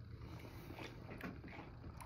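Faint mouth sounds of whiskey being sipped and swallowed from a tasting glass, over a low steady room hum, with a light tap near the end as the glass goes back down on the desk.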